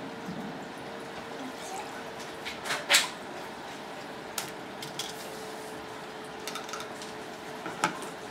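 Water poured from a plastic cup through a plastic funnel into a test tube, with light plastic taps and a sharp click about three seconds in. A faint steady hum runs underneath.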